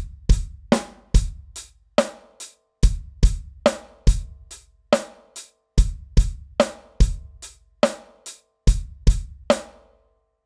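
Drum kit playing a simple groove in 7/8 time: hi-hat eighth notes with bass drum and snare. It is a standard 4/4 pattern with the final eighth note cut off, so each bar comes round one eighth early.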